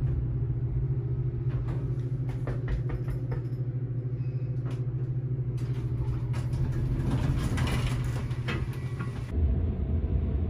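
Elevator car running between floors: a steady low hum and rumble with scattered clicks and rattles. The rumble cuts off a little after nine seconds in.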